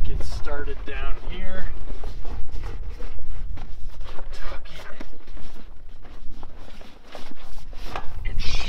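Heavy tent canvas rustling and crinkling in quick, irregular handling noises as a flap is rolled up by hand, over a steady low rumble.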